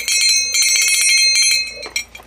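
A Wallace Silversmiths silver jingle-bell Christmas ornament shaken by hand, jingling quickly with a bright, high ringing tone. The jingling stops just before the end.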